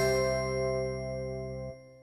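Closing chord of a TV programme's logo jingle: several tones held together, ringing out and fading away near the end.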